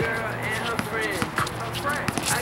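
Basketball bouncing on a concrete court in short knocks, under a hip-hop beat.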